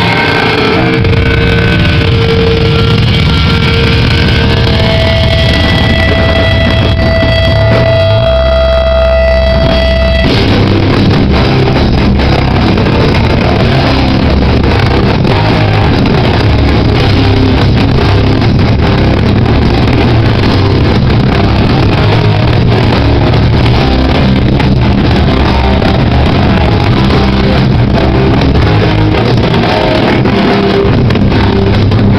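Live metallic crust band playing loud, distorted music: ringing held guitar and bass notes for about the first ten seconds, then the full band comes in hard and keeps going.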